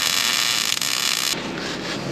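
MIG welder arc laying a bead on steel plate: a steady crackling hiss that cuts off suddenly about a second and a half in when the trigger is released.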